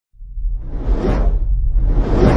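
Cinematic whoosh sound effects over a deep, steady low rumble, the opening of an intro sting: one whoosh swells and fades about a second in, and a second begins to rise near the end.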